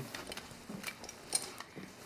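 A few light clicks and knocks as service pistols and holster gear are handled.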